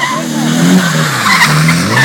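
Nissan 180SX drift car sliding on wet tarmac: the engine revs rise and fall as it is worked through the slide, with a dip about halfway, and the tyres skid across the surface.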